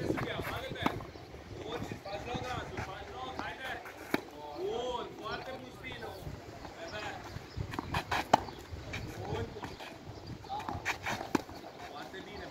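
Tennis ball struck back and forth with rackets in a rally, a sharp pop every few seconds, the loudest about eight seconds in. Indistinct voices run underneath.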